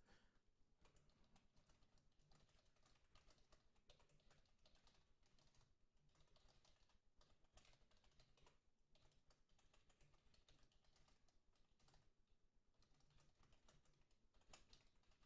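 Computer keyboard typing: a steady, very faint run of keystrokes.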